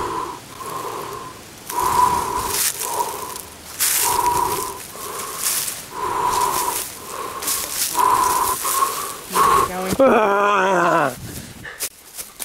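Feet crunching through dry leaf litter while a short two-note call repeats about every two-thirds of a second. About ten seconds in, a long voice-like howl falls steeply in pitch.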